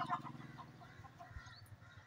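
Chickens clucking faintly: a low, steady drone that fades within the first half second, leaving only faint sounds.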